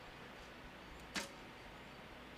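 A recurve bow being shot: one short, sharp snap of the released bowstring as the arrow leaves, about a second in.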